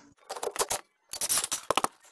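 Light metallic clinks and rattles in two short clusters as the loosened 15 mm nut, washer and rubber bushing come off the top of a rear shock absorber's stud by hand.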